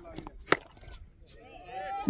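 A single sharp crack of a cricket bat striking the ball about half a second in, over faint distant crowd voices.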